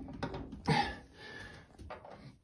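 A Delta shower valve cartridge is pushed hard by a gloved hand into the valve body. It gives a short scraping rush about two-thirds of a second in, then fainter rubbing and a light click near the end as it seats.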